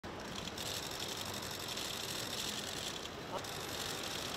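Steady outdoor ambient noise: a low vehicle rumble with a high hissing band that fades in and out.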